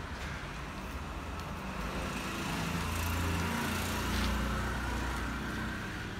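A motor vehicle passing on the street, a low rumble that swells to its loudest about halfway through and then eases off.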